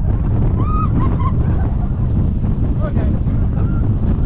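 Heavy wind buffeting and low rumble from a moving roller coaster train, the Steel Eel Morgan hypercoaster, recorded from the back seat. A few brief high-pitched sounds rise over the rumble, mostly in the first second and a half.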